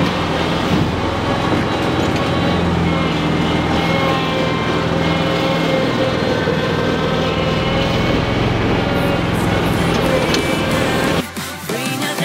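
Zero-turn mower engine running steadily as the mower is driven, loud and close. About eleven seconds in it cuts off abruptly and background music takes over.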